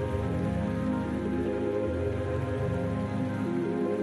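Slow ambient background music of held chords, the low notes changing every second or two, with a steady rain-like hiss behind it.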